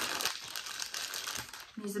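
Plastic postal mailing bag crinkling and rustling as it is handled.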